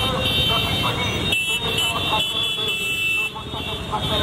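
Motorcycles running together in a slow, packed procession, with horns sounding in long, steady high tones over the voices of a crowd.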